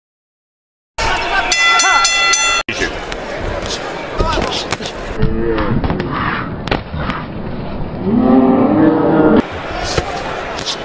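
Boxing broadcast audio after about a second of silence: a ringing tone for about a second and a half, then arena crowd noise with commentator voices and sharp smacks of punches landing.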